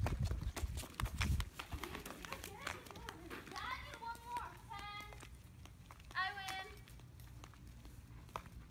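Footsteps on a concrete sidewalk, as a series of sharp taps that are thickest in the first couple of seconds. Children's voices call out faintly a few times in the middle.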